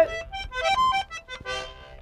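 Accordion playing a quick fill of short melodic notes between sung lines of a vallenato song. It is quieter toward the end.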